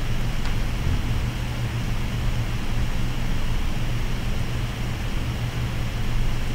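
Steady low hum with a hiss of room noise on the lecture microphone, unchanging throughout.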